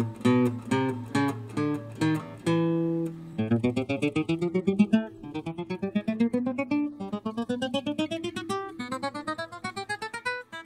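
Steel-string acoustic guitar played one fret at a time to check each note for buzzing. It starts with separate plucked notes, then, sped up, turns into quick runs of single notes that climb step by step up the neck, one run after another.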